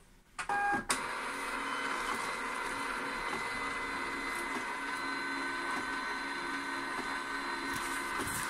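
Zebra GK420d direct thermal label printer printing a continuous run of labels: after a short blip about half a second in, its feed motor runs steadily from about a second in, a constant mechanical whir with a steady whine.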